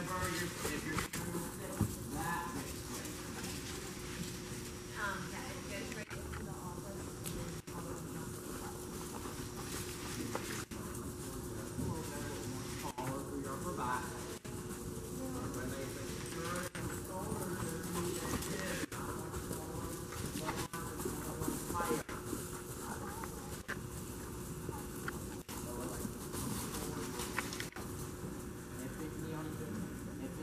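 Horses' hoofbeats on the soft sand footing of an indoor riding arena as several horses move around the ring, with faint voices and a steady low hum.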